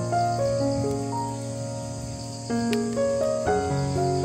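Steady high-pitched trill of crickets under slow, soft keyboard music with held notes that change chord twice near the end.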